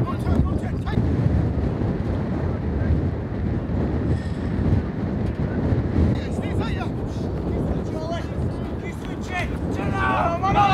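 Wind buffeting the camera microphone, a loud, uneven low rumble, with a few faint shouts from footballers on the pitch.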